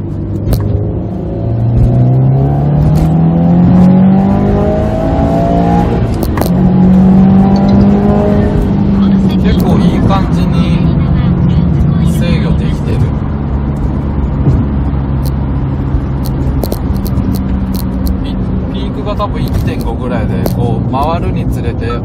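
Turbocharged 2.0-litre flat-four of a Subaru WRX STI (VAB), heard from inside the cabin, pulling hard at full throttle from 3000 rpm in third gear under boost. The revs climb for about six seconds, dip briefly, climb again, then settle to a steadier, easing drone.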